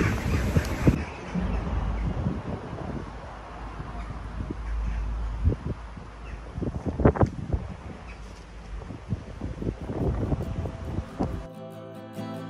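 Wind rumbling on the microphone, with a few short faint sounds scattered through it. Acoustic guitar music comes in near the end.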